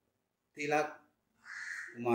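A man's voice speaking briefly, then a short harsh, rasping call just before his speech resumes.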